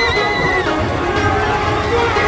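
A rider's high-pitched scream on a swinging pirate-ship fairground ride, rising and then falling, lasting under a second at the start, over loud fairground music.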